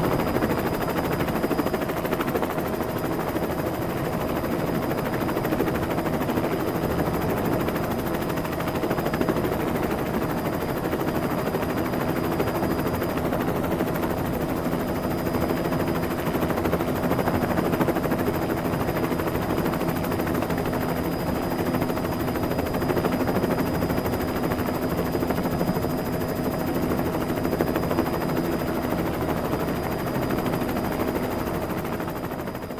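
Helicopter rotor noise: a loud, rapid, continuous chopping with a steady hum beneath it, from a helicopter hovering close overhead during a cable hoist.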